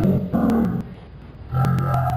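A man's voice talking into a microphone in two phrases, with a pause of about a second between them, and sharp clicks running through the recording.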